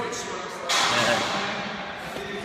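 Handling noise on a phone's microphone as it is swung about: a sudden rushing noise about two-thirds of a second in, fading away over the next second.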